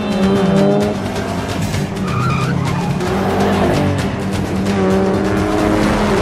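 Film chase soundtrack: small car engines revving hard, their pitch falling and rising as they accelerate, with tyres squealing, mixed over a music score.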